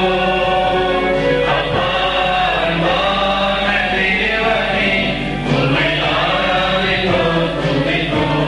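A choir singing a hymn in held notes, the melody moving from note to note every second or so without a break.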